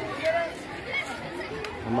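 Background chatter of a group of students talking, with a couple of faint clicks in the second half.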